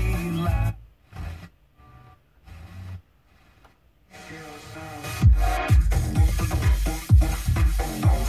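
Car FM radio being tuned by hand across the band. A station's music cuts off, a few seconds of brief snatches and muted gaps follow between frequencies, then electronic dance music with a steady kick-drum beat comes in about five seconds in.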